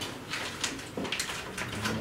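A few faint, short scraping and handling sounds as a boning knife works into the hip joint of a raw pork hind leg, over quiet room noise.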